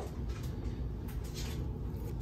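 The tip of a hobby knife scratching at paint on the flat back of a glass cabochon: a few faint, light scratches over a low steady hum.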